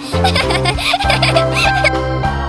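A cartoon baby's high giggling over bright background music with a steady bass line.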